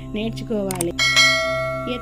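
Bell sound effect of a subscribe-button animation, struck once about a second in and ringing on as it slowly fades, over a low steady background drone.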